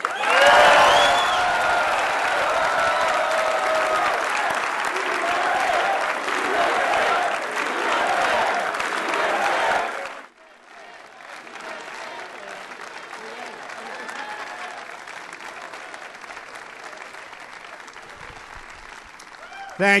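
Large audience clapping, with a few voices calling out near the start. The applause is loud for about ten seconds, then drops suddenly to a quieter level and carries on.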